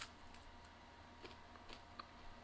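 Near silence with a few faint, short crunches from a bite of crusty homemade flatbread with hummus being bitten and chewed.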